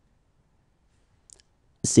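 Near silence, broken by a faint short click a little past the middle, then a voice starts saying the French phrase "C'est nul" near the end, beginning with a sharp "s".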